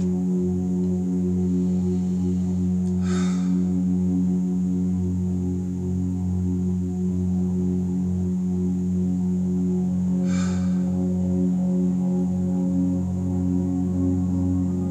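Steady low droning tone with several overtones, held unchanging as a meditation backing drone. Two short hisses of breath come through, about three seconds and ten seconds in.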